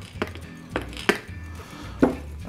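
Pump dispenser on a syrup bottle being pressed into a metal cocktail tin, giving three short sharp clicks about half a second apart, over soft background music.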